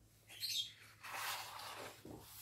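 Coloring-book page being turned by hand: a short, high chirp-like squeak of paper about half a second in, then about a second of paper rustling as the page sweeps over.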